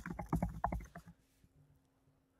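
Typing on a computer keyboard: a fast run of key clicks, about ten a second, that stops about a second in.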